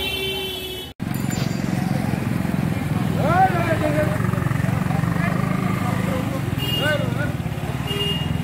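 A vehicle horn sounds briefly in the first second. After a brief dropout, a motorcycle engine idles close by with a steady low rumble, while people's raised voices call out over it about three seconds in and again near the end.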